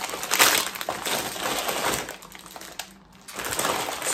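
Plastic sweet bag crinkling and rustling as it is handled. It is loudest in the first second, dies away briefly about three seconds in, then rustles again.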